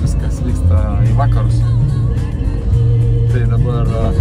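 Song with a singing voice over a steady bass line, playing on a car stereo inside a moving car, with road noise from the car beneath it.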